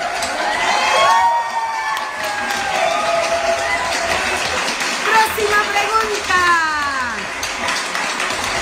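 A crowd cheering and clapping, with shouting voices and whoops rising and falling over the steady noise of the applause.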